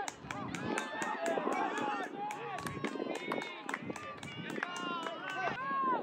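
Several voices shouting and calling over one another in rising and falling cries, as players and spectators yell during an attack on goal in an outdoor soccer game.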